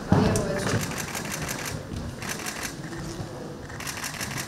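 Several rapid bursts of camera shutters clicking during a posed photo opportunity, over low murmuring voices.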